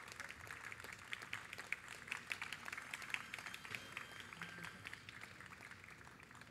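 Faint applause from a small audience: many scattered hand claps that thin out toward the end.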